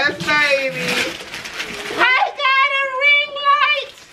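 Wrapping paper being torn off a present, then a long, high-pitched excited squeal held for nearly two seconds.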